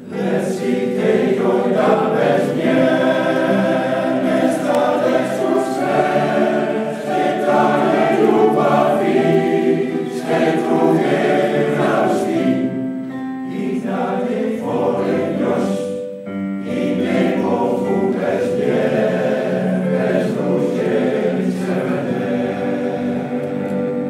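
Men's choir singing in harmony with piano accompaniment, in phrases with short breaths between them.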